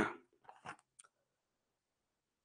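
Plastic water bottle handled and its screw cap twisted open: a short rustling burst, then a few small sharp plastic clicks within the first second, followed by silence.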